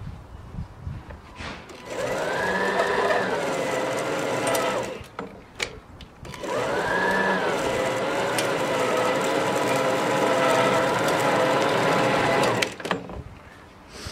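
Allett machine's electric motor driving its spinning lawn-rake (scarifier) cassette on a test pass to check how deep the tines reach, set almost to the bottom. It starts with a rising whine and runs about three seconds, stops, then starts again and runs for about six seconds before cutting off near the end.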